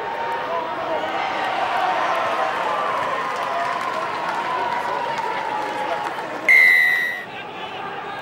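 Stadium crowd cheering and shouting, then a single loud, steady referee's whistle blast about six and a half seconds in.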